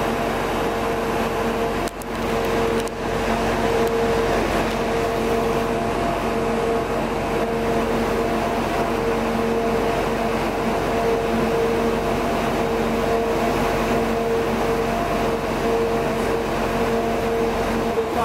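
A steady mechanical hum with a constant droning tone, from a running machine or vehicle.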